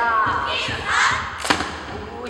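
Two sharp drum strikes about a second and a half apart, keeping the beat of a Hawaiian hula chant. The end of a chanted line is heard at the first strike, and there is a brief hiss between the strikes.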